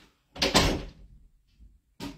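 An interior room door being pulled shut, closing with one loud bang about half a second in.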